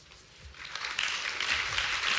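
Audience applause in a hall, starting about half a second in and holding steady.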